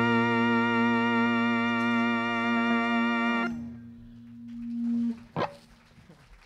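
Electric guitar chord held and ringing steadily at the end of a song, cut off about three and a half seconds in; a single lower note lingers until about five seconds, then one short sharp click.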